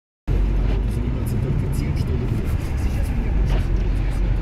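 Steady low rumble of a car's engine and road noise, heard from inside the cabin while driving on a snow-covered road.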